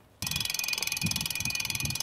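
A steady, rapid, high-pitched ticking buzz over a low, uneven rumble of wind and road noise, starting suddenly just after the start.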